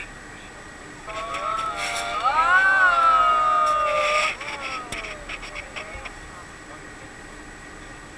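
Several people exclaiming together in a long, loud 'ooh' that swells about a second in, rises in pitch and then slides down. It dies away after about three seconds.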